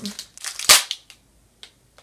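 A single sharp lip smack while tasting a lollipop, about two-thirds of a second in, after a brief breathy sound.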